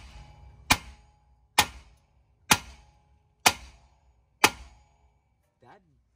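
Five hammer blows, about one a second, struck on the end of a BMW E36 rear axle shaft in its hub, each with a short metallic ring. The axle is stuck in the hub and is being driven out.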